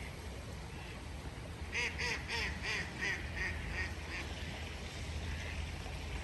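A duck quacking in a quick series of about nine quacks, roughly three a second, lasting about two and a half seconds.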